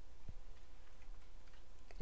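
A few faint computer keyboard keystrokes typing a filename: one clear click about a third of a second in and a couple of fainter ones near the end. Under them runs a steady low electrical hum with a faint whine.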